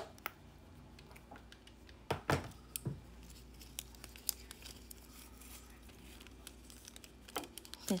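Small clicks, taps and rustles of nail supplies being handled on a tabletop by gloved hands: a sharp click at the start, a couple of louder knocks about two seconds in, then scattered faint ticks over a low room hum.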